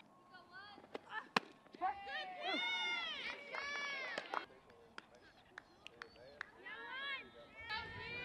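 Softball players shouting and calling out across the field in long, drawn-out cries, loudest in the middle. A single sharp crack comes about a second and a half in.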